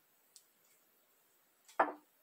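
Glassware being handled on a kitchen counter: a faint click, then one louder knock near the end as a glass vessel is moved or set down.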